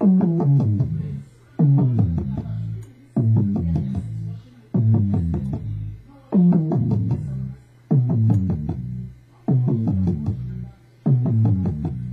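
A short stock music loop in Maschine playing on repeat: a phrase of pitched notes stepping downward, restarting about every one and a half seconds.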